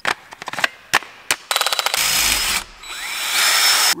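Several sharp clicks and knocks of metal parts being handled, then a cordless drill running in two stretches over the last two seconds, with a brief pause between.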